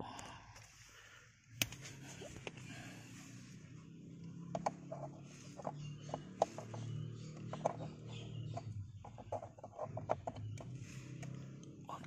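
Scattered small plastic clicks and knocks as an ELM327 OBD2 adapter is handled and pushed onto a car's OBD diagnostic port.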